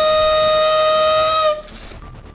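Party blower blown once: a single steady buzzing horn tone, held for about a second and a half and then cut off.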